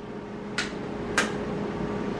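Two short, sharp clicks about half a second apart, over a faint steady hum.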